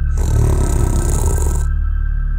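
A cartoon witch's rough, growling vocal sound, lasting about a second and a half, over steady background music.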